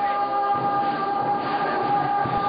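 A steady held tone, one pitch with its overtones, sounding unchanged over a noisy background.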